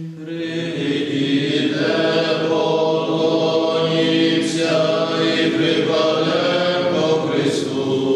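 Several male voices singing a Byzantine-rite liturgical chant together, in long held notes that change pitch every couple of seconds.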